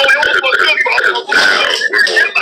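A person's voice talking, the words unclear.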